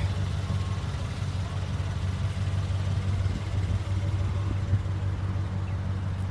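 Pickup truck's engine idling with a steady low hum, and one light knock about three-quarters of the way through.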